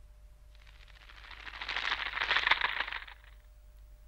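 A dense crackling, rustling noise swells up about half a second in and fades away about three seconds in.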